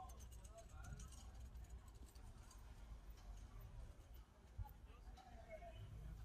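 Quiet street ambience with faint, indistinct voices in the distance and a low rumble, with a few light clicks in the first second.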